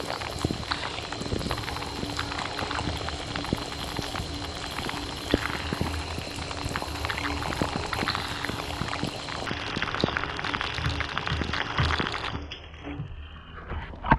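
Shower spray falling on a waterproof GoPro Hero 7 and the bathtub around it, heard through the camera's own microphones: a dense hiss of water with many small drop impacts. The water sound drops away about twelve seconds in, leaving it much quieter.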